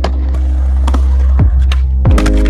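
Skateboard rolling on concrete with a few sharp clacks of the board, over music with a heavy bass beat.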